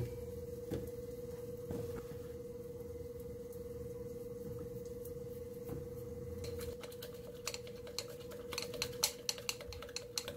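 Chopsticks clicking against the side of a glass measuring cup while beating an egg with chopped greens: a rapid run of light clicks in the second half, after a few scattered taps. A steady hum runs underneath.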